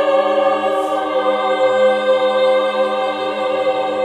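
Mixed choir of sopranos, altos, tenors and basses singing, holding one long sustained chord.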